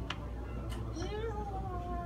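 A long, drawn-out meow-like vocal call starting about halfway through and sliding slowly down in pitch, with a few faint clicks.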